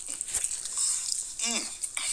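A man chewing a mouthful of pizza, with one short vocal sound about one and a half seconds in.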